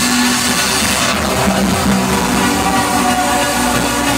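Electronic dance music, a trance set on a festival sound system, heard loud from within the crowd. A sweeping whoosh falls in pitch about a second in.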